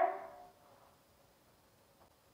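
The tail of a woman's spoken word fading out, then near silence: room tone.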